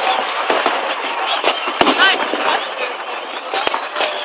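Aerial fireworks bursting in a large display: a few sharp bangs, the loudest a little under two seconds in and another near the end, over the steady chatter of a crowd.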